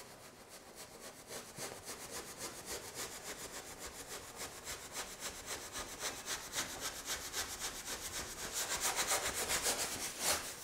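Stiff bristle brush scrubbing thin oil paint onto a stretched canvas in quick back-and-forth strokes, several a second, scratchy and getting louder toward the end.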